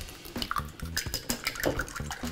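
Eggs being beaten in a bowl, with a utensil making quick clicks against the bowl's sides.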